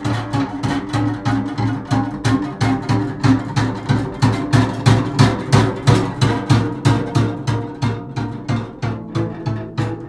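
Unaccompanied double bass bowed in rapid short strokes, about four or five a second, repeating a low note with a sharp attack on each stroke. The playing grows a little louder around the middle and eases off toward the end.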